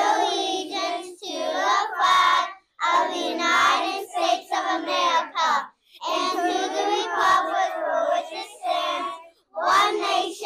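A class of young children reciting the Pledge of Allegiance together in unison, a chorus of voices speaking in phrases with short breaks between them.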